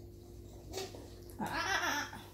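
A six-month-old baby vocalizing: a short sound a little under a second in, then a louder, longer wavering noise near the end.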